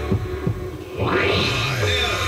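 Radio station jingle between an ad and a station ID, with throbbing low bass pulses. The level dips briefly, then a whoosh rises about a second in.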